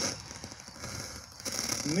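A pause in speech filled by faint, steady outdoor background noise, with no distinct events; a man's voice starts again just before the end.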